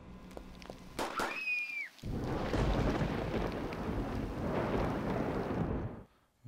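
A loud, thunder-like rumbling noise that lasts about four seconds and cuts off suddenly, preceded by a short whistling tone that rises and then falls.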